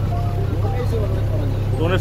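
Small shikara tour boat's motor running steadily under way, a low drone beneath people talking.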